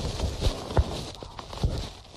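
Handling noise of a smartphone picked up by its own microphone: three dull knocks, two close together in the first second and one late, with rustling between.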